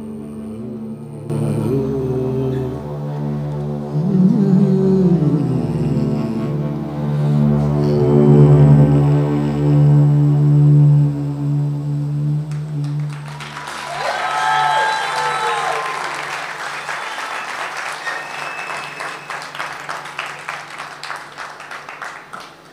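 A live band's quiet closing passage: a sustained low drone with a sliding vocal line over it, ending about thirteen seconds in. The audience then applauds with a brief cheer, the clapping thinning out toward the end.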